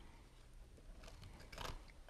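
Faint chewing of a mouthful of gluten-free pumpkin pie, with a few soft mouth clicks a second or so in.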